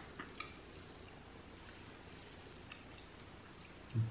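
Faint chewing of tough gummy candy: a few soft, short clicks in the first half-second and a couple more later, over quiet room tone.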